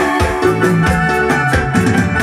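Live dance band playing a chilena medley: an electronic keyboard with an organ sound carries the melody over a steady bass and drum beat.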